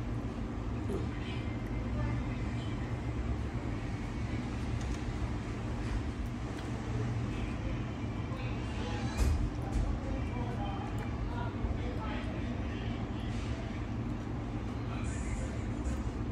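Restaurant background: a steady low rumble with faint indistinct voices and a few small clicks and taps.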